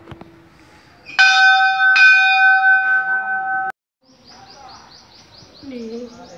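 Hanging brass temple bell struck twice, about a second apart, ringing with several clear steady tones; the ringing stops abruptly a little past halfway. Afterwards a faint, rapid series of high chirps.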